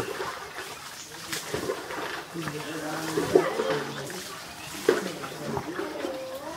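People talking off-camera in a language the recogniser could not follow, with a few sharp clicks.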